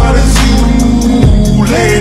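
Background music: a song with heavy sustained bass and a steady beat.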